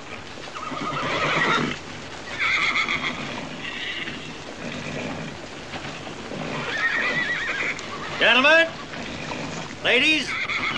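Horses whinnying several times over the murmur of a gathered crowd.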